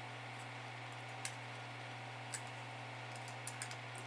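A few small metallic clicks of pliers working the bent tabs of an aluminium radio IF transformer can, more of them near the end, over a steady low hum.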